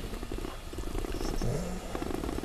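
A man's low, creaky, drawn-out hesitation sound, made between sentences, with a short rise in pitch about one and a half seconds in.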